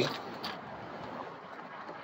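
Low, steady outdoor background noise with no distinct event: a faint even hiss of open-air ambience.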